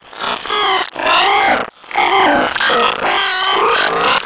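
Heavily distorted, pitch-warped voice-like audio: a string of short, bending, squealing and grunting sounds with a brief break a little under two seconds in.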